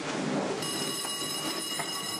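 Background score: a held, high ringing chord comes in about half a second in over a soft hiss.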